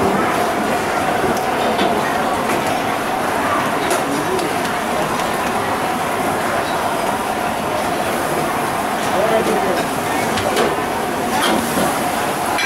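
Busy restaurant kitchen noise: a steady roar with indistinct background voices and a few faint knocks.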